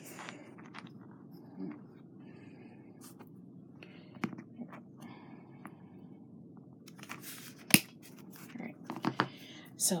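Light handling of craft wire with scattered small clicks and rustles, then one sharp snip about three quarters of the way through: 20-gauge wire being cut to a two-inch length with wire cutters.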